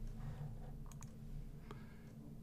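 A few faint computer mouse clicks, a pair about a second in and another near the end, over a low steady hum.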